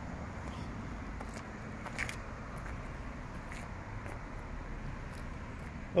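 Steady low outdoor background noise on an open forecourt, with a few faint clicks.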